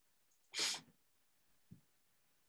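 A person sneezing once, a single short sharp burst, followed about a second later by a soft low thump.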